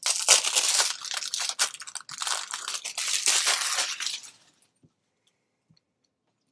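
Paper packing crinkling and rustling as it is handled and pulled at inside a candy jar, a dense crackle that stops about four seconds in.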